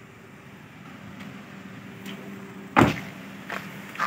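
A Perodua Bezza's car door shut once with a single loud thud about three-quarters of the way through. Two lighter clicks follow.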